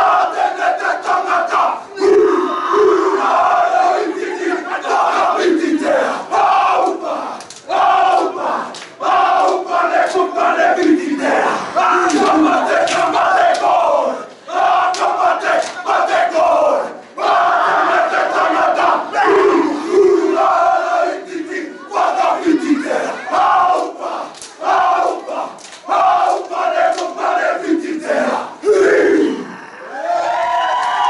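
Group of men performing a Māori haka: loud shouted chant in unison, in short rhythmic phrases, punctuated by sharp slaps on the body and foot stamps. The chant breaks off near the end.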